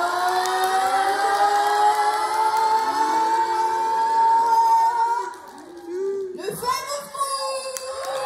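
A group of children's voices holding one long, slowly rising "oooh" of suspense for about five seconds. It breaks off, and short scattered shouts follow near the end.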